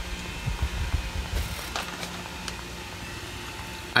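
Handling noise: low bumps in the first couple of seconds, then a few light clicks and a brief crinkle as a plastic bag of film capacitors is picked up. A steady faint hum runs underneath.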